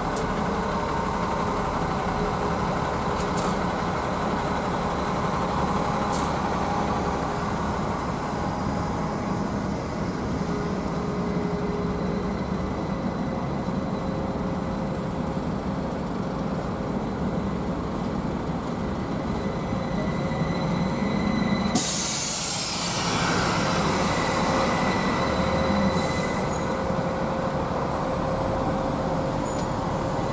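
TrolZa-5265.08 'Megapolis' trolleybus standing at a stop with street traffic around it, with steady whining tones over a low rumble. About two-thirds of the way through, a loud hiss of compressed air starts suddenly and fades over a few seconds.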